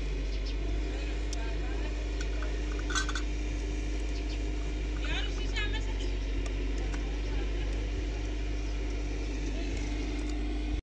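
A metal spoon clinks once against a glass jar about three seconds in, over a steady low background hum. A short, high, wavering sound follows about two seconds later.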